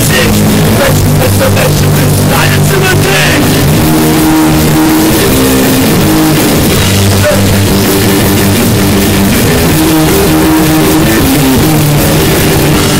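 Punk rock band playing loudly: distorted electric guitar chords held over bass and drums, in a home-made demo recording.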